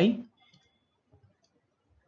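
A man's spoken word ends, then a few faint, scattered clicks follow from a stylus on a pen tablet while handwriting appears on screen.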